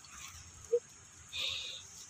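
A puppy gives a brief high-pitched squeal, lasting about half a second, near the middle, while play-fighting with another puppy; a short low yip comes just before it.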